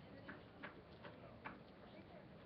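Near silence: quiet room tone with three faint, sharp clicks spaced irregularly.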